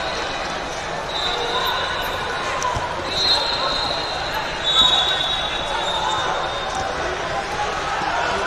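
Echoing hubbub of many voices from a crowded tournament hall, with a shrill, steady high tone sounding several times for about a second each.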